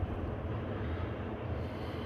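Steady low rumble with a faint hiss: outdoor background noise with no distinct event.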